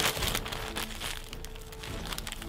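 A mailing bag crinkling as it is pulled open by hand, with rapid irregular rustles that are loudest in the first second and die down toward the end.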